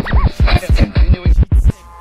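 Hip-hop intro jingle: a chopped vocal sample scratched back and forth, about six strokes a second, each bending up and down in pitch. It cuts off suddenly near the end.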